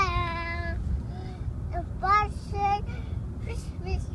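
A young child singing: one held note at the start, then a few short notes. A steady low road rumble from inside the moving car runs underneath.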